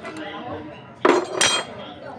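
A steel tool bar clanking twice against metal, about a third of a second apart, the second strike ringing briefly.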